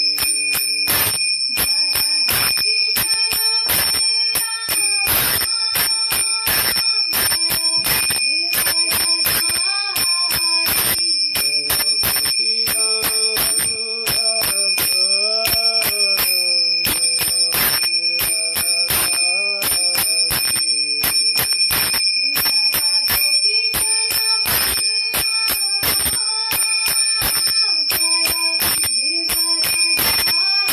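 A man chanting in a slow singing voice, holding long notes that glide between pitches, over a steady high-pitched ringing and frequent sharp clicks.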